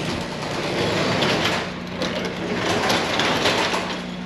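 Wooden sectional garage door being pulled down by hand, its rollers rumbling and rattling along the metal tracks in a few surges.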